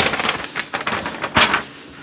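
A large folded paper installation guide rustling and crackling as it is lifted out of its box and unfolded, in several bursts with one sharp crackle about one and a half seconds in.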